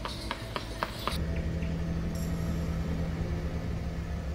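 Horse hooves clopping on asphalt at a walk, about four a second. About a second in they give way to a vehicle engine's steady low drone.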